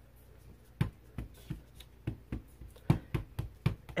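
Acrylic stamp block tapped and pressed onto an ink pad to ink a clear stamp: a string of light, irregular clicks and taps, the loudest near three seconds in.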